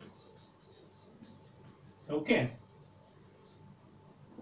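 A steady, high-pitched pulsing trill, about seven pulses a second, runs under the room tone throughout, insect-like in character. A man says "okay" about two seconds in.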